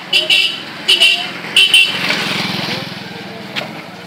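Several short vehicle horn toots in quick succession, then a motorcycle engine running close by for about a second and a half, fading as it moves off.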